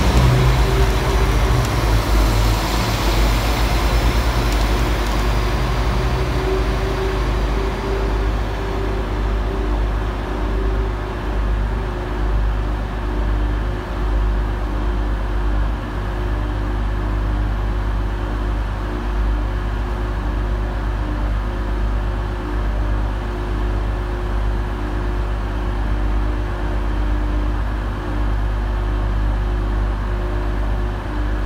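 A Northern multiple-unit train running at a station, with a steady low engine drone throughout. A rushing rail noise from the train moving past is loudest at the start and fades away over the first several seconds.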